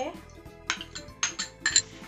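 Five or so light clinks of a spoon and bowls, spread over about a second, starting just under a second in, as curd is emptied onto semolina and mixing begins.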